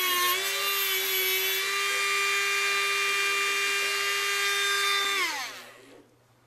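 Handheld rotary tool with a cut-off disc whining at high speed while cutting a thin metal pin. Its pitch dips briefly as the disc bites, then holds steady. About five seconds in it is switched off and the whine falls away as the motor spins down.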